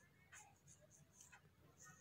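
Near silence, with a few very faint taps and scrapes of writing on a phone's touchscreen.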